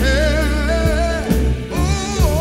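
Black gospel song played from a vinyl record: a voice sings long, wavering notes over a steady bass line, with a few drum hits.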